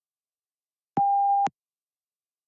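A single electronic beep, one steady mid-pitched tone about half a second long that starts and stops abruptly: the PTE exam software's cue that recording of the spoken answer has begun.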